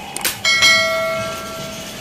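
A couple of quick clicks, then a single bell chime about half a second in that rings and fades away over about a second and a half: the sound effect of an animated subscribe button and notification bell being clicked.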